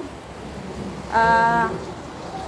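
A steady soft hiss. About halfway through, a person's voice holds one flat, unchanging note for about half a second.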